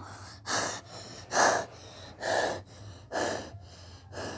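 A boy breathing hard into a close microphone: four loud, breathy gasps, about one a second, with no words.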